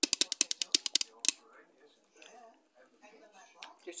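Fingernails tapping quickly for ASMR, about a dozen sharp taps in a second, then one last tap a moment later.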